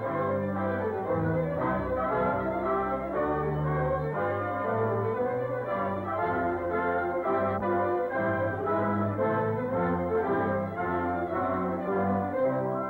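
Orchestral film score with brass to the fore, playing sustained chords that change in step.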